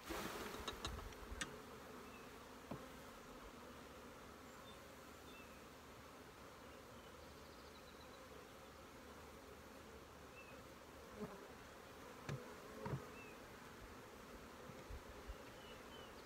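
Honeybees buzzing as a steady, faint hum around open hives. A cluster of clicks and scrapes at the start as a bee-covered frame is lifted out of the box, and a few light knocks later on.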